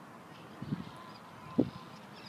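Two low, muffled thumps about a second apart, the second louder and near the end, typical of a handheld phone being moved while filming, with a faint thin steady tone in between.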